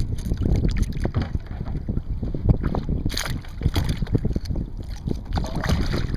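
Wind buffeting the microphone over open water, with splashes as a hooked black drum thrashes at the surface, the strongest a few seconds in and again near the end.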